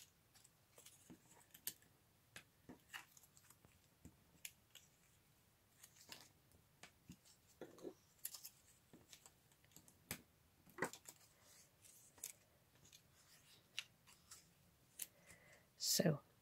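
Faint, scattered light clicks and rustles of thin cardstock strips being folded along their score lines, burnished with a plastic bone folder and set down on a cutting mat.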